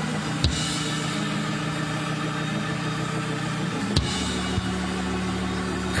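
Church keyboard holding low sustained chords, the chord changing about four seconds in, with two short knocks, one about half a second in and one at the chord change.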